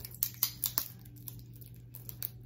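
Clear plastic tape being peeled off a pump bottle's nozzle and crinkled in the hand: a quick run of sharp crackles in the first second, then fainter handling.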